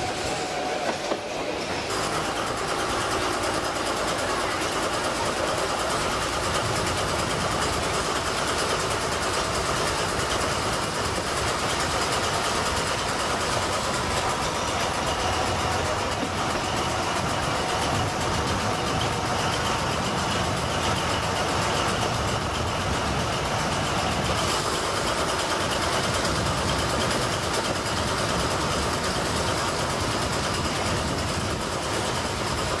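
MÁV Mk45 narrow-gauge diesel-hydraulic locomotive running under load as it hauls the train, heard from an open-sided carriage together with the steady rumble and clatter of the carriage wheels on the rails.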